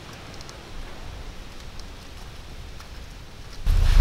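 Faint outdoor background: a low rumble like wind on the microphone, light rustling and a few soft ticks.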